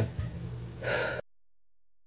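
A woman takes one short, audible breath about a second in, over faint room tone. The sound then cuts off to dead silence.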